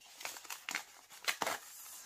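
Brown kraft-paper mailer crinkling and rustling as hands pull it open, with a few sharp crackles.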